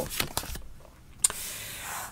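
Soft handling noises of a tarot deck as a card is drawn and laid on the tabletop. About a second in, a brief, soft, steady hiss starts.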